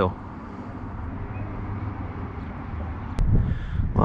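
Steady low outdoor background noise by a suburban pond, a distant rumble with no distinct events. A little past three seconds in comes a single sharp click, then louder low rumbling, typical of wind or handling on the microphone.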